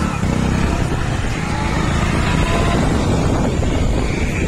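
Motorcycle engine running at riding speed, with wind rushing over the microphone.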